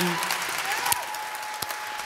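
Audience applauding: many hands clapping in a steady, dense patter, with a faint steady tone joining about a second in.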